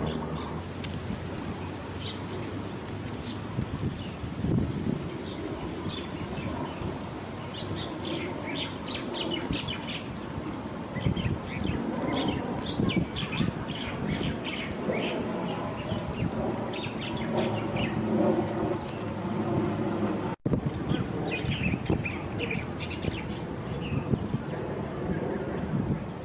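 Small birds chirping in a rapid string of short calls over a steady low rumble of outdoor background noise. The sound drops out for an instant near the end.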